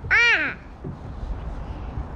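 A crow cawing once, a single drawn-out arched caw in the first half second, the last of a series of four, followed by a low steady background rumble.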